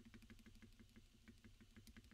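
NK87 Entry Edition mechanical keyboard with lubed and filmed Holy Panda tactile switches and a foam-modded case, typed on fast with both hands: a steady run of about eight to ten keystrokes a second, each a low, thocky clack.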